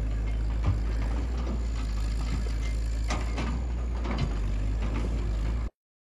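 Tracked excavator's diesel engine running steadily with a low rumble, with a few short knocks of the machine at work. The sound cuts off suddenly just before the end.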